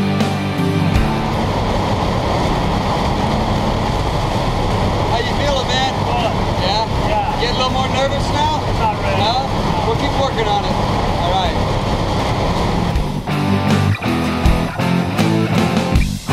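Loud, steady engine and propeller noise inside a small jump plane's cabin during the climb, with voices shouted over it from about five seconds in. Rock guitar music plays in the first second and comes back about three seconds before the end.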